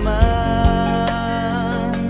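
Indonesian Christian wedding song: a singer holds one long note over instrumental backing with a steady beat.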